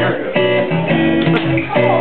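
Guitar strumming chords at a steady, even pace: the opening of a song.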